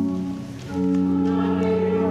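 Church organ holds a chord, breaks off briefly about half a second in, then comes back in as the congregation begins singing a hymn with the organ accompanying.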